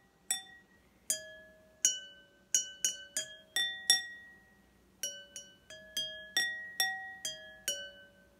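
A pencil tapping a row of glasses filled to different water levels, each strike a short ringing clink at its own pitch, so the glasses play a quick tune of about eighteen notes with a pause of about a second midway.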